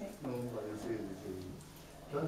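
A man speaking in a low voice, in short phrases that trail off about one and a half seconds in.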